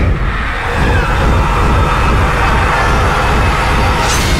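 Loud, dense horror film score with a deep, continuous low rumble under a sustained wash of sound.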